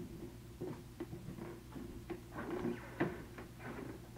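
Irregular light knocks and clicks, with the loudest sharp knock about three seconds in, over a steady low hum.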